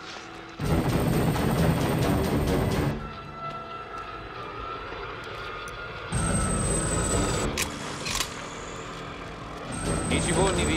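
Action-film soundtrack: a dramatic music score mixed with an attacking helicopter and its gunfire. The noise comes in loud about half a second in for two seconds, drops back under the music, and rises again about six seconds in with a high whine, followed by two sharp bangs.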